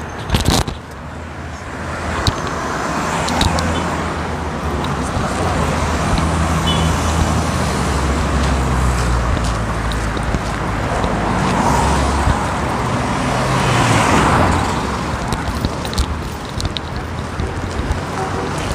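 Street traffic: a steady rumble of car engines and tyres, swelling once about two thirds of the way through as a vehicle passes.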